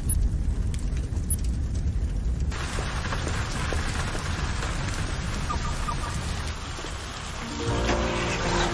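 Heavy rain falling on vehicles and wet tarmac, its hiss coming in suddenly about two and a half seconds in, over a steady low rumble.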